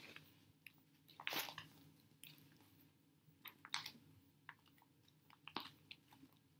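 Faint, scattered rustles and light taps of objects being moved about while a book is searched for, with near silence between them.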